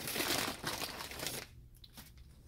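Brown paper takeout bag rustling and crinkling as a hand rummages inside it, the crackle stopping about a second and a half in.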